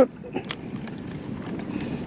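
A few sharp clicks from a spinning reel just after a cast, as the bail is closed and the line is wound in, over a steady rush of wind on the microphone.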